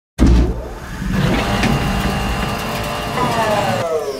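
Intro sound effect of a car engine running and revving. It starts abruptly, and near the end several high sweeps fall steeply in pitch.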